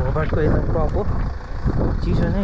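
A man's voice talking in short phrases over a heavy, steady rumble of wind buffeting the microphone.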